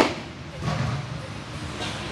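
One sharp metallic clank right at the start, of barbell weights knocking in a weight room, followed by low scattered clatter and faint voices of the workout.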